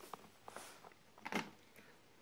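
Faint handling of a laptop's plastic bottom cover: a few soft clicks and one louder tap a little over a second in.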